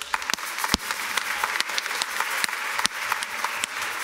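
Congregation applauding: many hands clapping together in a steady patter of overlapping claps.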